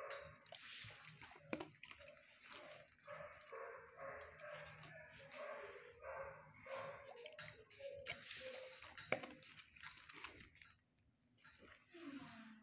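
Dogs barking in a shelter kennel block, faint and irregular, with a couple of sharp clicks.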